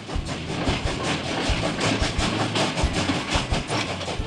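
Sound effect of a train rushing along the track: a steady rumble with a fast, even clatter of wheels on rails.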